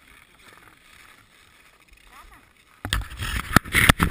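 Faint background, then about three seconds in a sudden loud burst of rustling, scraping and sharp knocks as the action camera is handled and moved against the wearer's clothing and gear.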